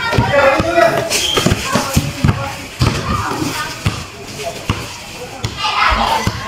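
Basketball bouncing on a concrete court during play: a run of short sharp thuds, with players' voices calling out over them.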